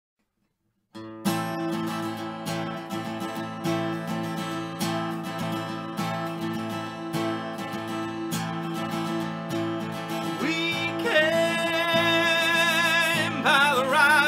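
Acoustic guitar strummed in a steady rhythm, starting about a second in, playing the intro of a folk-pop song. About eleven seconds in, a voice comes in with long, wavering held notes over the strumming.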